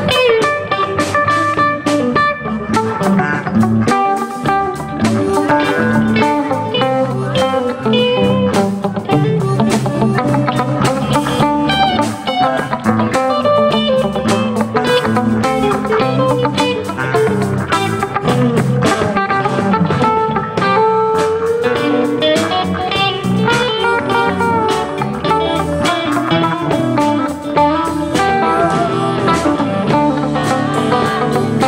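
Live band playing an instrumental stretch with no singing: electric guitars lead over bass and drums in a steady groove.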